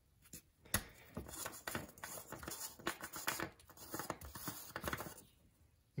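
Plastic engine oil filler cap being twisted off by hand: a run of faint scratches and small clicks from the cap turning in its threads, with a sharper click about a second in.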